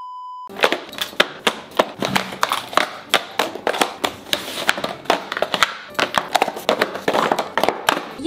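A half-second test-tone beep over a test card, then a rapid, irregular clatter of taps and knocks that begins about half a second in and runs to the end: small cardboard cosmetics boxes being handled and shuffled against each other.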